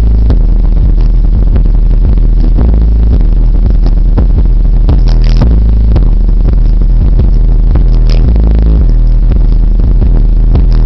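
JL Audio car subwoofer in a carpeted box playing a rap song's bass line at very high volume, so loud that the recording is overloaded and distorted. The deep bass is steady throughout, with clicks and clatter over it.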